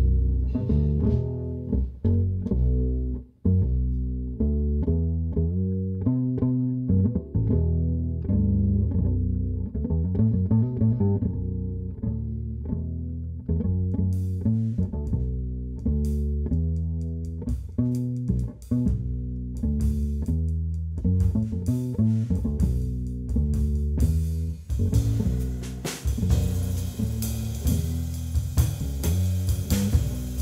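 Electric bass guitar playing an unaccompanied plucked melodic intro in a jazz tune, low notes with quick runs and slides. About halfway through, light cymbal strokes join, and near the end the cymbals build to a steady wash.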